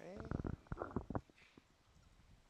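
A man's short wordless vocal sound, rising in pitch at first and then breaking into a few quick pulses, over in about a second.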